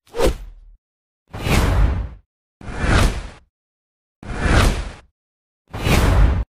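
Whoosh transition sound effects marking logo reveals, five in a row. Each lasts about a second and has a deep low end, with dead silence between them.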